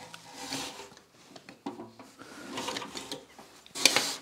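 Light clicking and handling of the cooling-system filler caps as they are unscrewed, with a sharp click just before the end.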